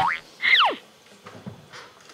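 Cartoon sound effect closing an animated intro jingle: a short upward blip, then about half a second in a quick falling whistle that slides from high to low.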